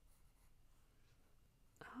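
Faint pencil strokes on paper, a quiet scratching in short strokes, followed near the end by a soft-spoken "oh".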